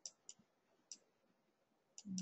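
Near silence with a few faint, sparse clicks in the first second, from a computer pointing device while numbers are drawn on screen.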